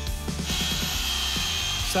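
Corded electric machine polisher starting up about half a second in and running with a steady high whine as it polishes car paintwork, over background music.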